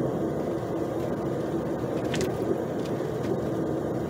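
Steady engine and tyre drone heard inside a car's cabin while cruising, with one brief faint click about two seconds in.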